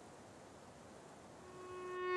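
A lull in a bowed-string film score with only faint hiss, then a single sustained violin note swells in near the end.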